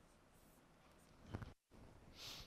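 Faint scratching of a stylus on a tablet as a box is drawn around a written answer. A short soft knock comes about a second and a half in, and then the sound cuts out for a moment.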